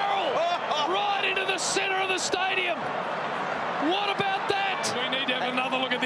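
Television match commentary: men's voices talking over stadium crowd noise, with a few sharp knocks.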